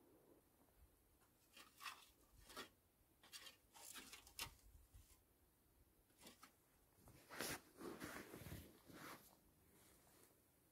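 A series of short, faint rustles and scrapes as a person shifts and sits up on an inflatable sleeping pad and moves in his clothing, with the loudest cluster near the end.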